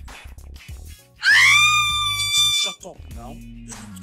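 A woman's loud, high-pitched scream of excitement, rising at first and then held for about a second and a half, over steady background music.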